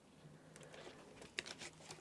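Faint handling sounds of a laptop keyboard's ribbon cable being worked into its connector: light rustling with a few small clicks, the sharpest about one and a half seconds in.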